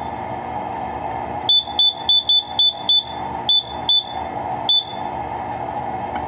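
Keypad of a Simplex 4100 fire alarm control panel beeping as its menu keys are pressed: about nine short, high beeps at uneven intervals, bunched from about a second and a half in to near the end, over the steady hum of a loud room.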